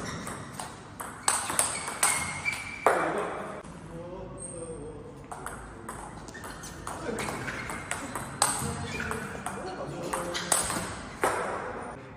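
Table tennis rally: the celluloid-type ball clicking sharply off paddles faced with Pinyi Tsunami rubber and off the table, about a dozen hits at uneven spacing, several in quick succession in the first few seconds.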